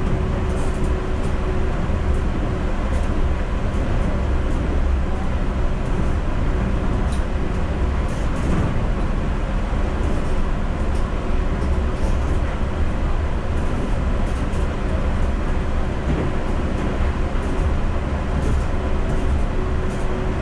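Yurikamome rubber-tyred automated train running on its elevated guideway, heard from inside the front of the car. It makes a steady low rumble with a faint steady hum that drops out for a while and comes back.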